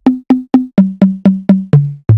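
A percussion fill in a bregadeira dance track, played alone: a run of short, pitched drum hits, about four a second, stepping down in pitch in three steps.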